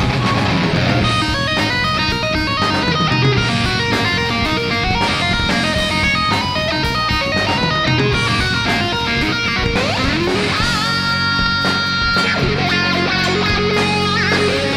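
Melodic speed metal band playing live: a fast distorted electric guitar lead plays rapid runs of notes over bass and drums. About ten seconds in, a rising slide leads into a long held high note.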